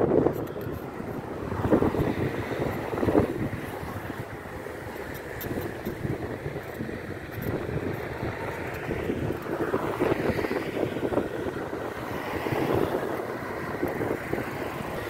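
Wind buffeting the microphone while riding along, over a low rumble of road traffic, with stronger gusts about two and three seconds in.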